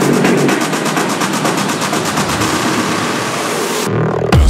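Techno build-up with the bass drum taken out: a rapid drum roll, then a rising noise sweep from about halfway through that cuts off suddenly near the end.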